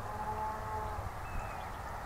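Rural outdoor ambience: a low rumble and an even hiss. A faint, steady pitched sound is held through the first second, and a brief faint chirp comes about halfway.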